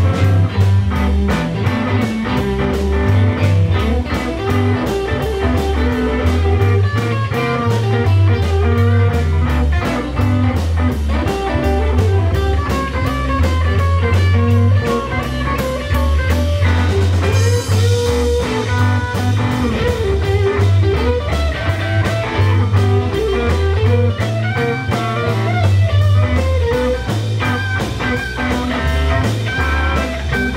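Live blues band playing an instrumental passage: electric guitars over a steady bass guitar line and drum kit keeping an even beat, with a cymbal splash a little past halfway.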